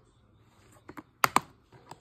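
Plastic DVD case being snapped shut: a few light clicks, then two sharp clicks close together about a second and a quarter in, and softer handling clicks near the end.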